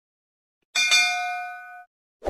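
Notification-bell sound effect of a subscribe-button animation: one bright ding about three-quarters of a second in, ringing several clear tones that fade out over about a second.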